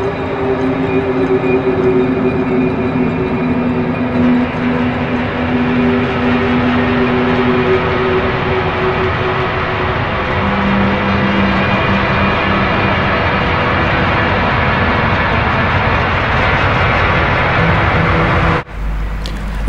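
Eerie ambient background music: long held low notes over a dense, steady wash of sound, the low note changing about ten seconds in.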